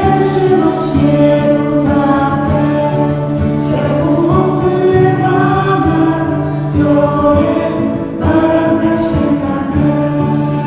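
Choir singing a Christian worship song, voices holding long sustained notes over a steady low held note that drops out for a few seconds near the end.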